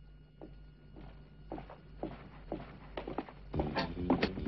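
A woman's footsteps, about two steps a second, growing louder as she walks on. Music comes in near the end.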